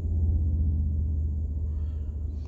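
Low steady rumble inside a vehicle cabin, slightly louder as it begins.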